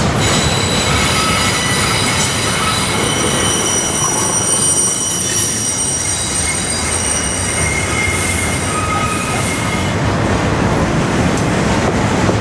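Double-stack container train's well cars rolling past with a steady rumble of steel wheels on rail, the wheels squealing in several high-pitched tones that die away near the end.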